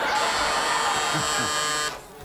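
Game-show buzzer sounding once, a steady harsh buzz that holds for nearly two seconds and cuts off suddenly. It is the host's signal to switch from one pair of players to the other.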